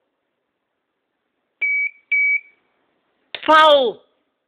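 Two short, high electronic beeps about half a second apart, followed near the end by a brief, louder pitched sound that slides downward.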